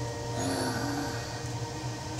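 Soft background music from a television, long held notes at several pitches, over a low steady hum.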